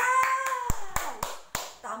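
A woman clapping her hands about five times over a second and a half, with her voice holding a high, drawn-out cheer through the first claps. Speech starts up again near the end.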